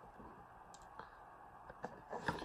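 Near silence with a few faint clicks, about a second in and again near the end, from a cardboard box being handled and turned in the hands.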